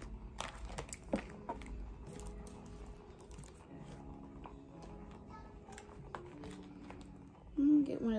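Small paper cards being handled, shuffled through and set down on a cloth-covered table: scattered light taps and paper rustles, over faint held tones.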